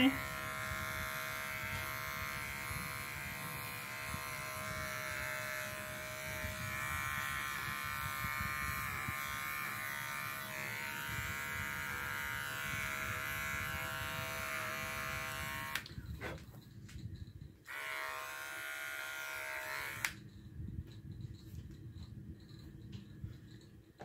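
Electric grooming clipper running steadily. It stops briefly about 16 seconds in, runs again for a couple of seconds, and is switched off about 20 seconds in, followed by a few light handling clicks.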